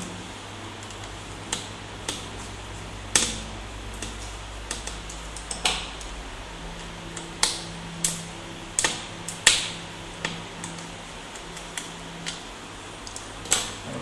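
Small screwdriver and fingers working the hard-drive cover screws on a laptop's plastic base: about a dozen sharp, irregular clicks and taps, over a faint steady hum.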